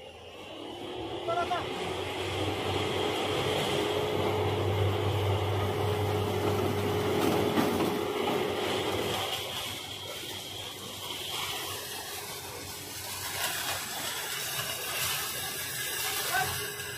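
Tractor engine running under load to drive the hydraulic lift of a sugarcane harvester's loading bin as it tips cut cane into a trolley, with a steady whine over the engine. It eases to a lower, steadier running level about nine seconds in.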